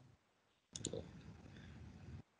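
Two quick computer-mouse clicks close together, about three-quarters of a second in, after a moment of dead silence, then faint room noise.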